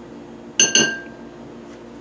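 A metal spoon clinking against a glass bowl: two quick strikes about half a second in, followed by a ringing tone that fades away.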